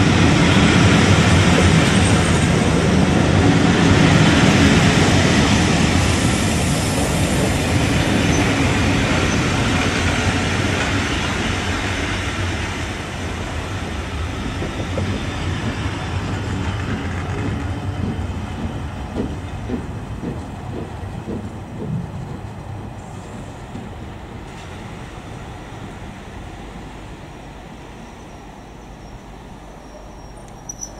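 Railway coaches of a charter train rolling past along a platform, wheels clicking over the rail joints. The rumble is loudest at first and fades steadily as the train draws away.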